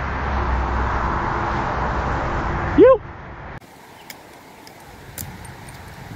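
Steady rush of highway traffic with a low rumble, heard from a pedestrian overpass above the road. It cuts off suddenly a little past halfway, leaving a quieter outdoor background with a few light clicks.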